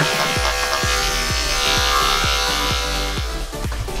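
Andis two-speed electric dog clippers running with a steady buzz while trimming a poodle's coat, under background music with a regular beat.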